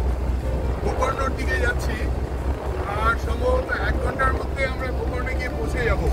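People singing together inside a moving car's cabin, their voices over a steady low rumble of engine and road noise.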